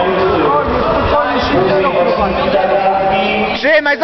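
Several people's voices talking and calling out over one another. A man's voice starts speaking clearly, louder than the rest, near the end.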